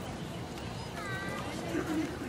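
Background of people's voices talking at a distance, with one short, high-pitched call about halfway through.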